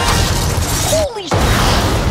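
Movie-trailer action sound effects: loud crashing and shattering noise in two bursts, with a brief drop about a second in where a single tone falls in pitch before the second crash.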